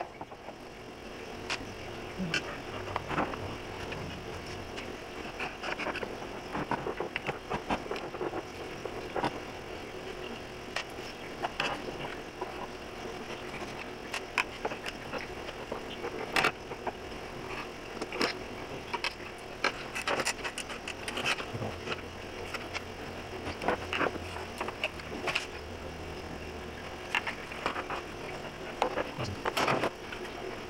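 Scattered small clicks, ticks and clatter of a screwdriver taking Phillips-head screws out of a car instrument-cluster bezel and gauge housing, with loose screws and parts set down on a wooden table, over a faint steady hum.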